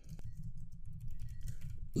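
Typing on a computer keyboard: a quick, continuous run of keystrokes.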